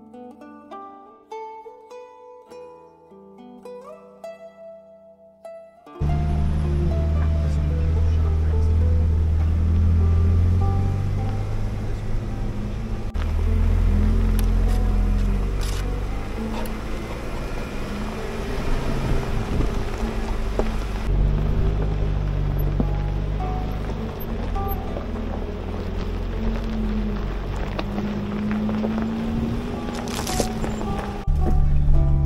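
Soft plucked-string background music, cut off suddenly about six seconds in by the sound of a Jeep driving slowly along a rough dirt trail: a steady low engine and drivetrain rumble mixed with wind buffeting on the outside-mounted camera, with occasional gravel knocks.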